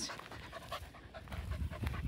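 Portuguese Water Dog panting.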